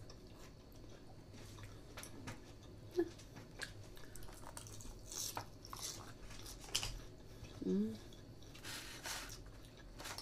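Mouth sounds of chewing salad, with scattered small clicks of chopsticks on food and containers and a brief closed-mouth "mm" hum about three-quarters of the way through.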